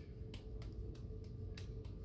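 Raw ground-beef and rice meatball mixture being tossed back and forth between the palms to shape a meatball: a quick, even run of soft pats, several a second.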